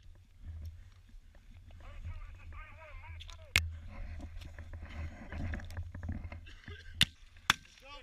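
Gunfire on a live-fire range: a single sharp shot about three and a half seconds in, then two more close together near the end. Under them there is low rumble and rustling from the helmet camera's microphone, and faint distant shouting.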